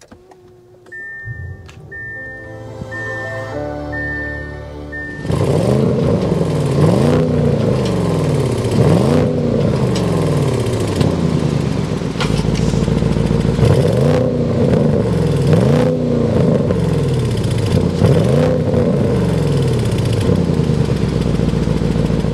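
2023 Audi S8's 4.0-litre twin-turbo V8 starting up after a few high chimes, with a loud flare at start, then revved in repeated blips about every two seconds, heard through the quad exhaust.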